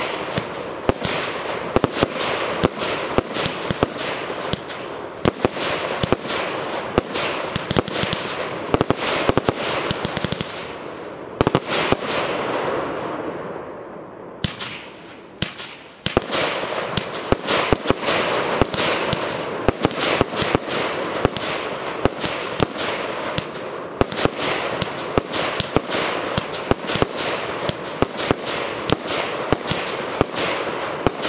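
A Double Gold Box 2.0 firework cakebox firing a rapid string of shots, with sharp launch and burst bangs several times a second. About halfway through the shots thin out and fade briefly, then pick up again in a dense string.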